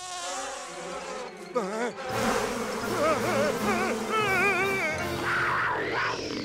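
Cartoon mosquito buzzing in flight, a thin whine that wavers up and down in pitch, over background music.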